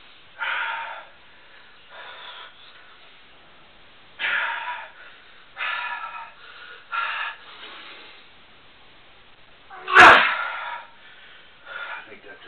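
A man's forceful, breathy exhalations and grunts of effort, in separate bursts every one to two seconds, as he strains to crush a very heavy hand gripper with both hands. The loudest and sharpest burst comes about ten seconds in.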